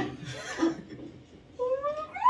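A cat meows once near the end: a single call that rises in pitch and then bends back down. A short burst of voices comes before it.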